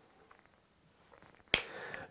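Near silence, then a single sharp click about one and a half seconds in, followed by a faint soft hiss.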